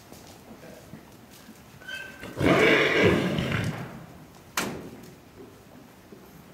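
A horse whinnying once, loud and rough, for about a second and a half, starting a little after two seconds in. A single sharp knock follows about a second later.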